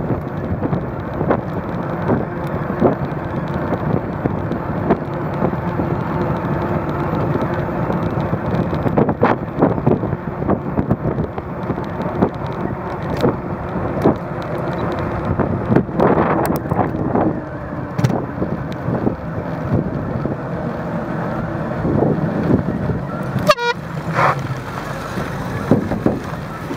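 Riding noise from a bicycle on a paved cycle path: a steady rumble with a faint hum, broken by scattered knocks and rattles as it goes over bumps.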